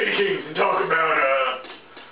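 A man's wordless vocal sounds, stopping about a second and a half in.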